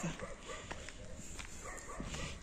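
Dogs barking faintly.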